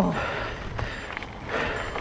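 Bicycle tyres rolling over a gravel path with wind rushing over the camera microphone: a steady, noisy rumble and hiss.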